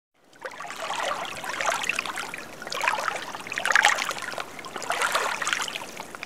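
Running water, a stream trickling, fading in about half a second in and dying away near the end.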